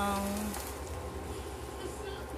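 The tail of a woman's drawn-out 'ng…' hesitation fades out about half a second in. Then comes only faint room noise: a steady low hum with light hiss.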